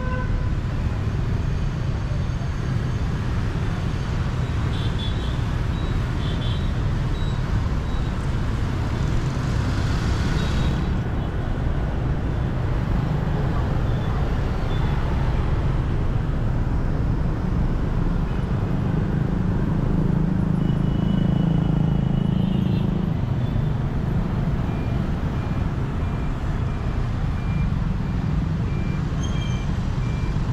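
Busy city street traffic, mostly motorbikes with cars and trucks, running as a steady rumble, with short horn toots now and then and an evenly repeating beep near the end.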